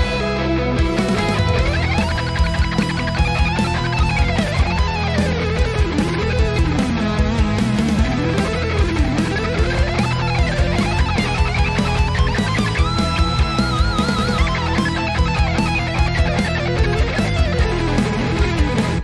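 Neoclassical metal band mix playing back: a fast electric guitar solo in harmonic minor, with rapid up-and-down runs over drums and backing. About thirteen seconds in, the guitar holds a long note with wide vibrato before the runs resume.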